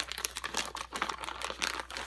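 A sealed package being pulled open by hand, its wrapping giving a run of irregular crackles and rustles.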